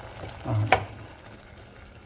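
A pot of greens boiling on an electric stovetop, a faint steady bubbling hiss. About three-quarters of a second in, a short low sound and then a single sharp click.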